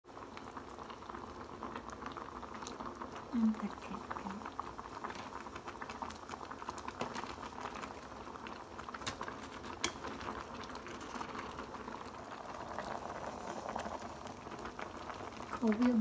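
Broth boiling in a stainless steel electric hotpot: a steady bubbling hiss with many small pops and clicks.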